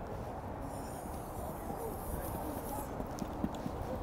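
Steady low outdoor background noise with faint distant voices and light footfalls of a player sprinting on artificial turf.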